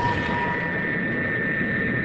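Turboprop bomber engines droning steadily in flight, with a constant high whine over the broad engine noise.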